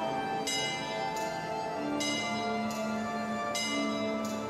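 Small bells on a kinetic clock sculpture striking a slow tune, a new note about every three quarters of a second, each ringing on over held lower notes.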